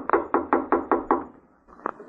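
Sound-effect knocking on a door: a quick, even run of about eight knocks, then a pause and one more knock near the end.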